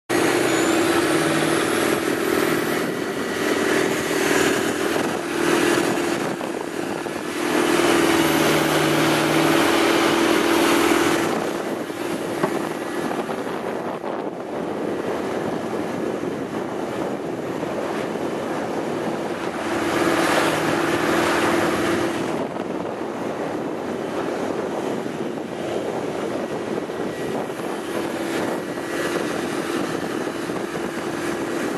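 Longtail boat's engine running steadily under way over a rush of wind and water; the engine note grows louder twice for a few seconds.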